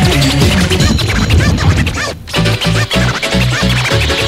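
Early-1990s rave/hardcore DJ mix: in the first half, sliding pitch glides like record scratching over the beat. At about two seconds the music drops out briefly, then comes back with a fast pulsing bass line.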